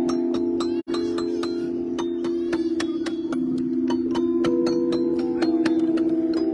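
Outdoor playground xylophone played with two mallets: a quick run of struck notes, each bar ringing on under the next strikes, with a momentary gap in the sound just under a second in.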